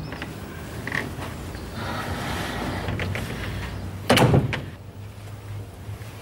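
A front door being opened, with faint knocks and a loud thud about four seconds in.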